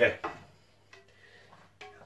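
Faint clicks and light knocks of a saucepan being picked up and brought over, a couple of them about a second in and near the end, over a low steady hum.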